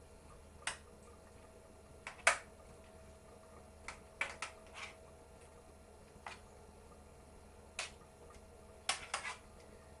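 Potato pieces being turned by hand in oil in a metal roasting tin: scattered light clicks and taps of the potatoes and fingers against the tin, about a dozen at irregular intervals, the sharpest a little over two seconds in.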